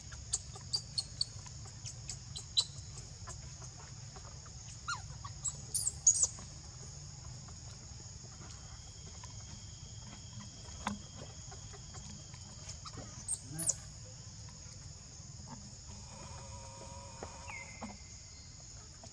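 Outdoor ambience: a steady high insect drone with scattered sharp clicks and a few brief high rising squeaks, the loudest about six seconds in. A short lower-pitched call comes near the end.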